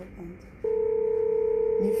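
Telephone line tone: one steady beep-like tone that comes on just over half a second in and holds for about a second and a half before cutting off, part of a repeating on-off pattern on the phone-in line.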